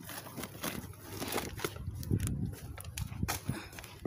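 Woven plastic shopping bag rustling and crinkling as a hand rummages in it, with irregular small knocks and bumps.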